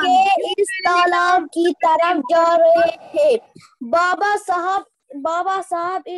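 A child's high voice in a drawn-out sing-song, holding long, even notes with short breaks between phrases, heard over a video call.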